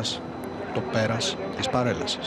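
Speech only: a man's voice giving a formal spoken report in Greek, in short phrases with pauses.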